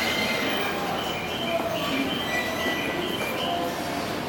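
Tōkaidō Line electric commuter train braking to a halt at the platform, with short high-pitched brake squeals recurring over its rumble as it slows.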